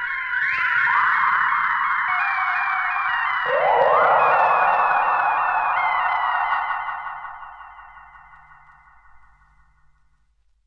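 Electronic synthesizer music: a dense swarm of short, rapidly repeating falling tones, with new layers coming in and a rising glide about three and a half seconds in. It fades out over the last few seconds as the piece ends.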